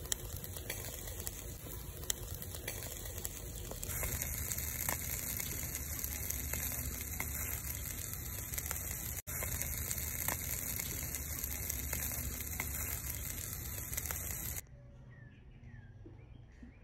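Whole catfish grilling on a wire rack over a charcoal fire in a clay stove: a steady sizzling hiss with scattered crackles and pops. Near the end it drops away to quieter outdoor background with faint bird chirps.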